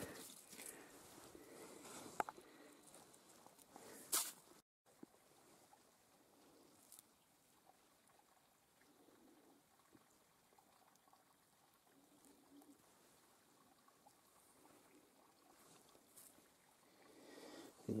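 Near silence, with a few faint clicks and one sharper knock about four seconds in, from rocks being handled on frozen ground.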